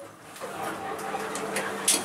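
Elevator car doors sliding, ending in a sharp knock just before the end, over a steady low hum in the car.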